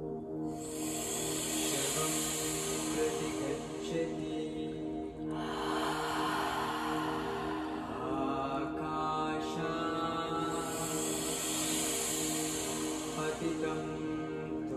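Breathwork music: a steady held chord with slow, deep paced breaths over it. A long hissing inhale lasts the first third, a long exhale follows, and another inhale begins about three quarters of the way through.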